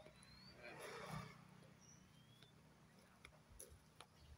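Near silence: faint outdoor background with a brief soft rustle about a second in and a couple of faint, thin rising chirps.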